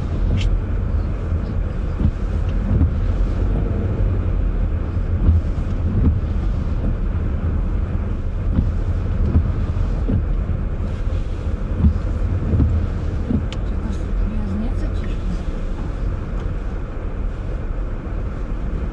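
Steady road noise inside a moving car: a continuous low rumble of tyres and engine on a wet city street.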